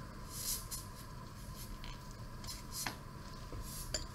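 Faint rustling and a couple of light clicks over a low steady room hum.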